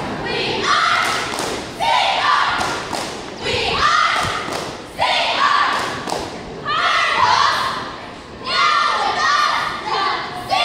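A cheerleading squad shouting a cheer together in short chanted phrases, one every second or so, with sharp thumps on the mat at the start of several of them, echoing in a large gym.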